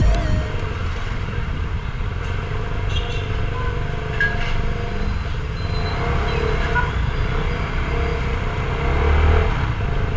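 CFMoto 250NK single-cylinder motorcycle running as it is ridden through traffic, its engine heard under a steady wind rumble on the helmet camera, which swells near the end.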